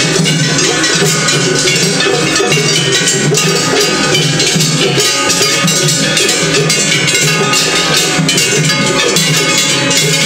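Gion-bayashi festival music from several floats at once: fast, continuous clanging of small hand-held metal gongs (kane) over beating taiko drums, loud and unbroken in a 'tatakiai' drumming contest between floats.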